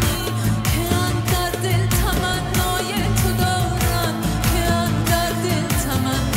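Live band performing a Persian folk-based electronic world-music song: a woman singing in Persian over a steady drum beat about twice a second, with low bass and keyboards.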